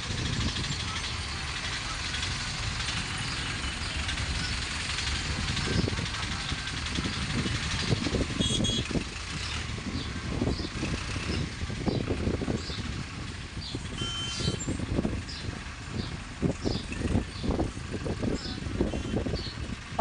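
Steady rumble of tractor and truck engines running nearby, with a murmur of voices and scattered short knocks and clatter.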